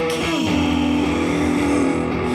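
Shoegaze / witch house band recording in an instrumental stretch without vocals: layered guitar over a bass line, with one long held note that bends slightly near the end.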